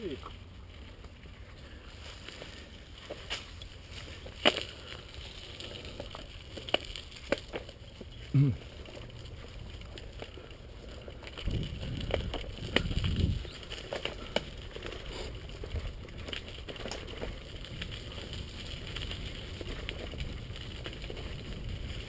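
Mountain bike riding along a dirt singletrack, heard from a camera on the rider: a steady low rumble of tyres on dirt with scattered sharp clicks and rattles from the bike over bumps, and a louder stretch of rumble about twelve seconds in.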